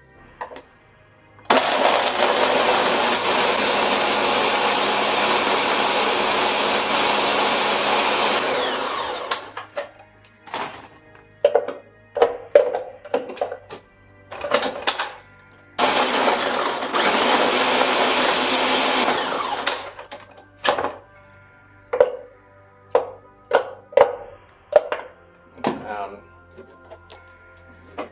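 Ninja countertop blender running at full speed for about seven seconds, blending frozen strawberries with yogurt and milk into a thick mix, then winding down. After a few brief sounds it runs again for about four seconds, winds down once more, and is followed by a string of short sounds.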